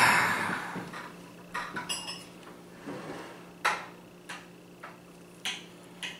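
Small, irregular metallic clicks and clinks of a steel tool tip working against a vintage Craftsman ratcheting adapter's steel selector ring, pushing the spring-loaded detent bearing down to seat the ring during reassembly. One clink about two seconds in rings briefly.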